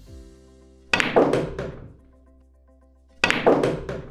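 Pool shot played with low and right spin: the cue tip strikes the cue ball, followed in quick succession by ball-on-ball clicks and knocks of the balls against the cushions. A near-identical run of clicks and knocks comes again about two seconds later, as the same shot heard a second time.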